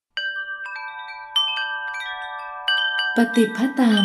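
Chimes ringing: a few clusters of bright metallic notes are struck and ring on, overlapping one another, starting suddenly out of silence. A voice begins speaking over the ringing near the end.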